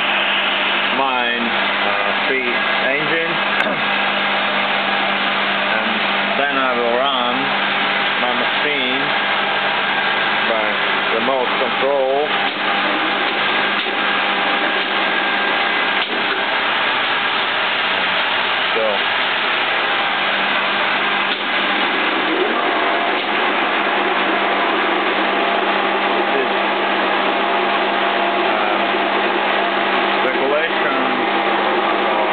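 The motor-generator set of a Stanko 2L614 horizontal boring machine running after power-up to supply the machine's DC drive: a steady electric hum and whir.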